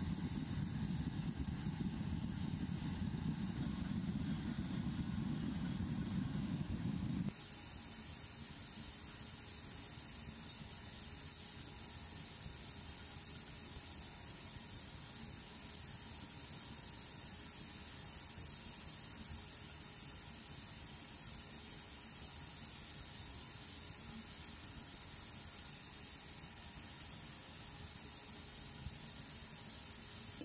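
Gas-fired smelting furnace burner running steadily with a low rumble. About seven seconds in, the sound changes abruptly to a quieter, steady high hiss.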